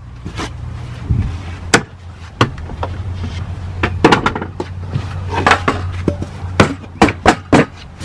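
Plywood sheet being handled: a string of sharp, irregular wooden knocks and taps, bunched around the middle and near the end, over a steady low hum.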